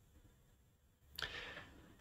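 Near silence, then a short intake of breath a little over a second in, half a second long.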